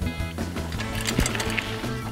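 Theme music playing under the end credits, with a steady bass line and light percussive clicks.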